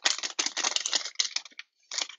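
A trading-card pack's wrapper crinkling and crackling as it is torn open and peeled off the stack of cards. The crackle runs in a rapid stream, breaks off briefly about a second and a half in, and comes back in a short burst near the end.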